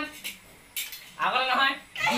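A brief clatter of metal plates a little before a second in, followed by a short spoken call that is the loudest sound.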